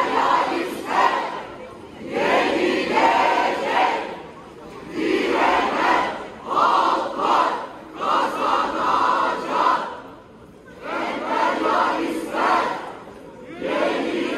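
A crowd of marching protesters chanting slogans in unison: loud shouted phrases of a second or two, repeated over and over with short pauses between them.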